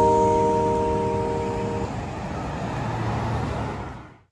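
Background music holding a chord that stops about two seconds in, over steady city road traffic from passing cars. The traffic noise carries on alone and cuts off abruptly at the end.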